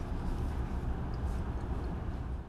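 Steady low rumble with a faint hiss: lab room noise, with no distinct event.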